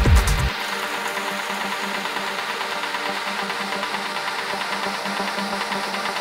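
Hypnotic deep techno: the kick drum and bass drop out about half a second in, leaving a beatless breakdown of steady, faintly pulsing synth textures.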